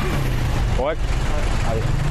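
Road traffic with vehicle engines running at a busy roadside: a steady low rumble.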